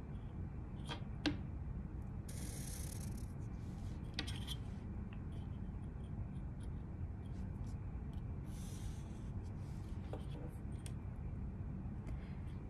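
Felt-tip permanent marker drawn along a steel ruler across cardstock: two short scratchy strokes, about two seconds in and again near nine seconds. A few light clicks of the ruler being moved come near the start, over a low steady hum.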